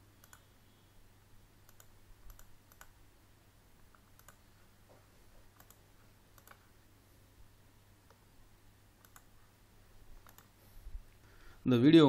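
Faint, sparse computer mouse clicks, about one a second at irregular intervals, over a low steady hum.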